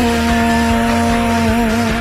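A singer holds one long sung 'ah' note over a pop backing track, steady in pitch with a slight waver near the end before it stops.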